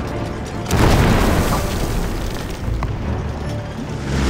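An explosion about a second in: a sudden loud blast with a deep rumble that fades slowly, over background music.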